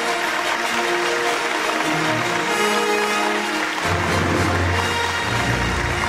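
Audience applauding over stage music played for the presenters' entrance; a deep bass part comes in about two-thirds of the way through.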